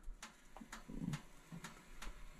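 Faint, scattered light clicks of a metal fork against a glass baking dish and oven rack as the fork is pushed into baking pumpkin bread and drawn out, testing whether the bread is done.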